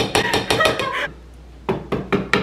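Metal beater from an electric hand mixer being knocked against the rim of a stainless steel mixing bowl to shake off cake batter: a quick run of sharp knocks, several a second, that stops about a second in and starts again near the end.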